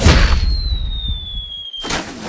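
Cartoon sound effects: a hard thump as a soccer ball is kicked, then a thin whistle sliding slowly down in pitch for about a second and a half, cut off by a second sharp hit near the end.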